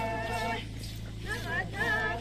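A group of women singing a traditional folk dance song together in long held notes. The singing breaks off just after half a second in, then resumes near the end with wavering, rising notes.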